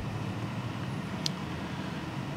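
Steady low background hum of the room, with one short faint click a little over a second in.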